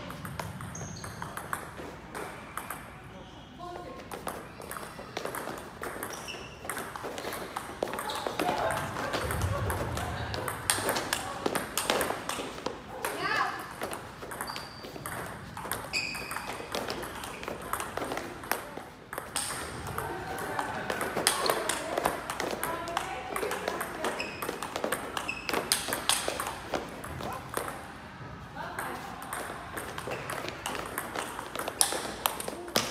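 Table tennis rallies: a celluloid-style ball clicking back and forth off paddles and the table in quick, irregular runs of sharp clicks. Voices can be heard in the background.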